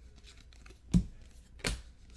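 Trading cards being handled and sorted onto a stack: light paper rustling with two sharp slaps of cards, one about a second in and another near the end.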